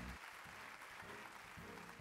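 Audience applauding, faint and steady, with music faintly coming in near the end.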